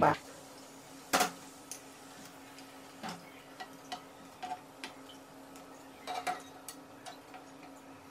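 Wooden chopsticks and ceramic plate clicking and knocking against each other and against the pan as slices of sticky rice cake are set one by one into a shallow pan of boiling water. Scattered light clicks, the loudest about a second in, over a faint steady hum.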